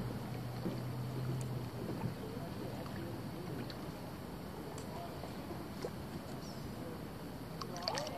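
Water splashing and gurgling around an inflatable paddle board being paddled along a calm river, with small scattered splashes. A low steady hum fades out about two seconds in, and a brief louder splash comes near the end.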